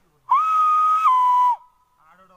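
Hand whistle blown through cupped hands: one loud, steady note about a second and a quarter long that drops a step lower in pitch partway through, then cuts off.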